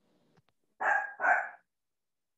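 A dog barking twice in quick succession, heard through a call participant's microphone.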